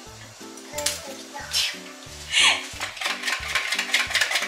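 Background music with a repeating pattern of low notes. Over it, a whisk clicks rapidly against a glass mixing bowl as egg is beaten, mostly in the last second, with a few brief clinks or scrapes earlier.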